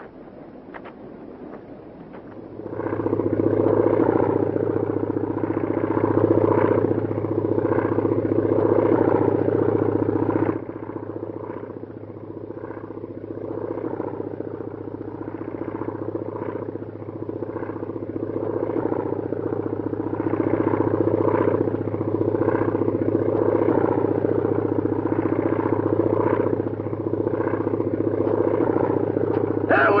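Aircraft engine droning overhead, coming in about two seconds in. It drops suddenly about ten seconds in, then swells again.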